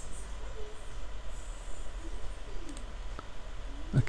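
Steady low hum and faint hiss of a computer recording microphone, with a single mouse click about three seconds in.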